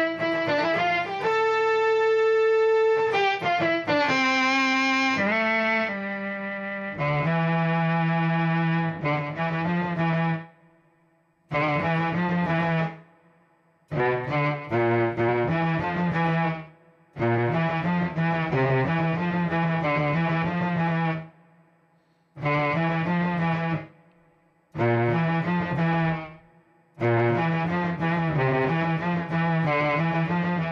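Electric guitar played through an Electro-Harmonix Mel9 tape-replay pedal on a violin-type string voice: sustained, held notes in short phrases. Each phrase cuts off abruptly, leaving brief silent gaps between them. About seven seconds in, the notes drop to a lower register.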